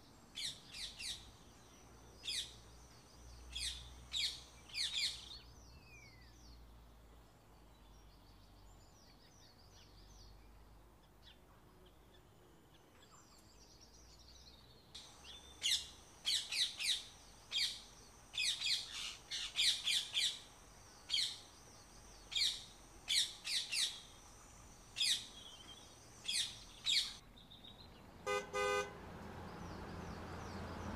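Small birds chirping in quick bursts of high twitters: busy for the first five seconds, faint for about ten, then busy again. Near the end, a brief horn-like honk sounds once.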